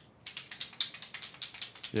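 Typing on a computer keyboard: a quick, uneven run of key clicks starting about a quarter second in, with a man's voice coming in at the very end.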